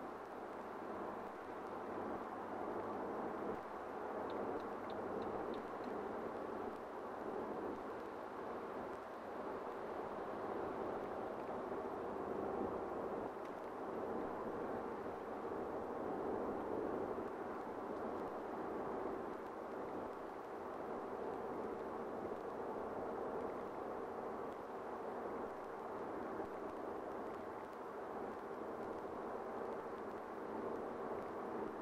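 Steady cabin noise of a BMW 520d F10 driving at expressway speed: tyre and road noise mixed with the hum of its four-cylinder turbodiesel, heard from inside the car.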